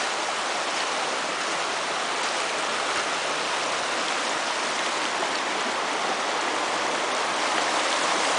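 Small rocky stream running over stones in shallow riffles, a steady rushing of water that grows slightly louder near the end.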